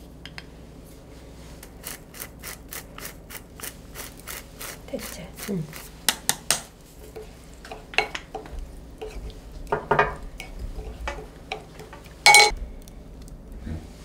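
A plastic spoon stirring and tapping in a glass bowl of soy-sauce seasoning. There is a quick run of light ticks, about four or five a second, then a few scattered knocks, and near the end one sharp ringing glass clink.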